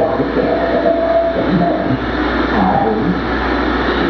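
A dense, steady wash of electronic noise with a low hum underneath and short, wavering tonal fragments running through it, from a live experimental noise performance.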